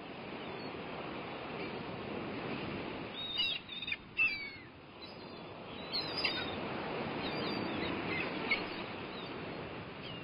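Birds chirping over a steady outdoor background hiss that fades in at the start. The loudest short calls cluster about three to four seconds in, with scattered chirps later.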